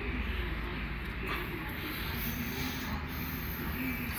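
Steady low background noise with no distinct mechanical event. A faint voice sounds in the distance around two seconds in.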